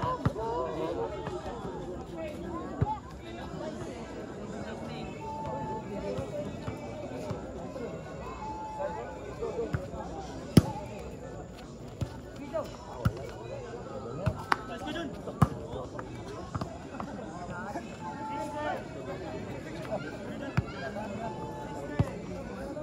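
Volleyball rally on a dirt court: several sharp smacks of the ball being struck by hands, the loudest about halfway through, over a constant chatter and shouting of a large crowd of spectators.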